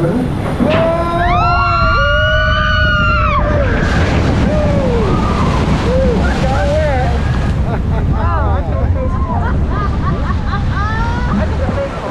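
Log flume riders screaming on the drop: one long drawn-out scream in the first seconds, then a string of short shrieks and yelps, over the steady low rumble of the boat rushing through water.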